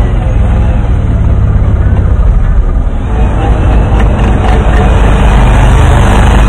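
Quad bike (ATV) engine running hard as the machine spins through snow, a loud, steady low engine note that dips briefly about halfway through and then comes back louder.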